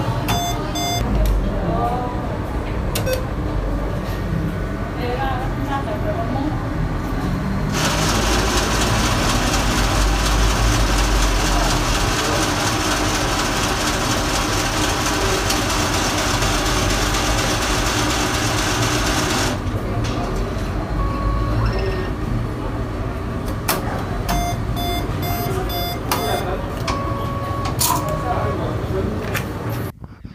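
ATM cash dispenser's note-feed rollers running as a steady rushing noise for about twelve seconds, starting about eight seconds in, as the machine spools out a stack of about forty bills; the sound lasts as long as the bills take to count. Short electronic beeps from the machine come near the start and again a few seconds after the spooling stops.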